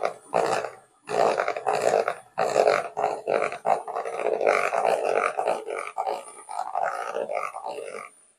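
Electric hand mixer running, its twin wire beaters churning thick cake batter of flour, cocoa and buttermilk in a plastic bowl, with a thin high whine over the rough churning. It drops out briefly about a second in and cuts off suddenly at the very end.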